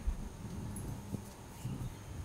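Handling noise at a shrine shelf: a yellow sequined cloth is lifted off a steel tray of cups, with a few soft low thuds and one short click.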